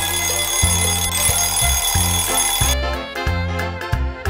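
Musical jingle in which an alarm-clock bell rings over a rhythmic bass line. The ringing stops abruptly a little under three seconds in, and the music carries on alone.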